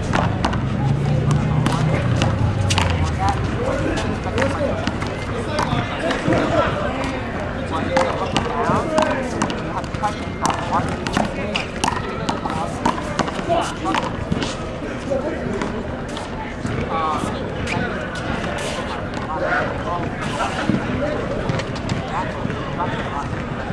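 One-wall handball rally: irregular sharp smacks of the small rubber ball off players' hands and the concrete wall, under a background of voices. A low rumble runs through the first few seconds.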